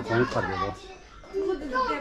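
Speech only: a man's voice talking, then after a short lull a higher voice, a child's, talking.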